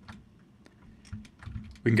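A few scattered, quiet clicks of a computer keyboard and mouse while edge loops are selected in a 3D modelling program. Speech begins near the end.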